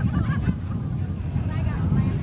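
Short shouted voices over a steady low rumble of wind buffeting the microphone.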